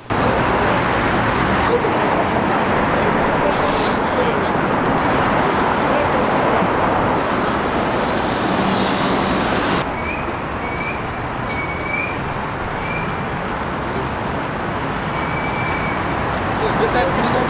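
Busy city-street traffic: a steady wash of car and bus engines and tyres. It drops a little about ten seconds in, after which a few short, high chirps come through.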